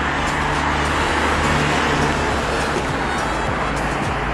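Steady city road traffic: cars driving past on a multi-lane road, an even rush of tyre and engine noise over a low hum.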